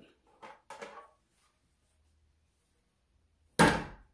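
Hard plastic housing of a Roomba self-emptying base being handled: a few light knocks in the first second, then one loud, sharp thunk near the end as it is set down on the table.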